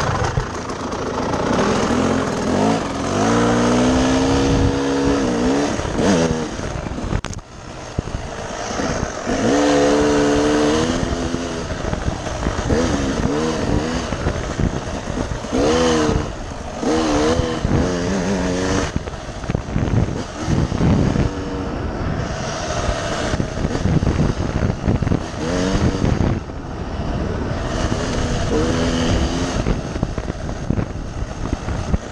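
Dirt bike engine revving up and down as it is ridden off-road, its pitch rising and falling again and again through throttle and gear changes, over steady rough noise of the ride.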